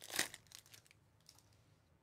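Foil wrapper of a 2021 Bowman Chrome baseball card pack being torn open by hand, a brief crinkling tear in the first half second.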